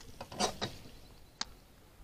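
Zebco 33 spincast reel clicking as it is worked after a cast. There is a cluster of small clicks about half a second in and one sharp click near the middle.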